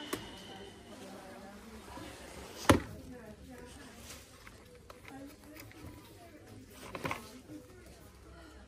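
A sharp knock about three seconds in, the loudest sound, and a softer double knock near the end, over faint background voices.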